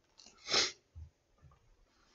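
A man's single short, sharp breath: one breathy puff about half a second in, followed by a faint low knock.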